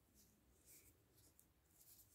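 Faint, short scratches and clicks of metal knitting needles working yarn as stitches are knitted, several in quick succession.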